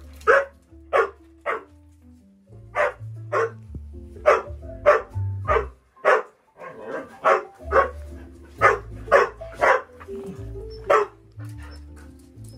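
A dog barking over and over, about two barks a second in short runs, over background music with a low bass line.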